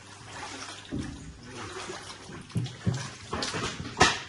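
Steps wading through shallow floodwater, the water sloshing and splashing with each stride, with a few heavy low thumps among the steps.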